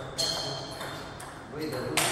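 Table tennis ball striking paddle and table: a sharp ping just after the start and a louder one near the end, with fainter ticks between.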